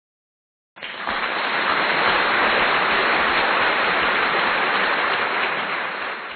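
Steady rushing noise of wind and road noise inside a moving car, starting about a second in and fading away near the end.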